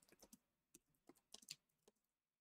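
Faint keystrokes on a computer keyboard: an uneven run of quick taps as a short line is typed.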